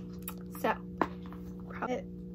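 Hands working at a sealed Apple Watch box that won't open, with a sharp tap about a second in and brief murmurs of effort either side, over a steady low hum.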